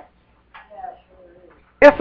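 A pause in a man's preaching, filled by a faint, drawn-out murmur from elsewhere in the room. The preacher's loud voice comes back in near the end.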